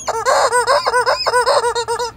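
Blue squeeze-toy rubber chicken being squeezed over and over, giving a loud, rapid run of short squawks, several a second, each rising and falling in pitch, a few with a hiss of air.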